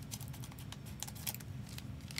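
Irregular light clicks and crackles from a foil trading-card pack wrapper being handled and turned in the fingers, over a steady low hum.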